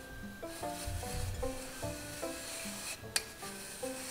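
Hands rubbing glutinous rice flour through a metal mesh sieve, with background music. A single sharp click comes a little past three seconds in.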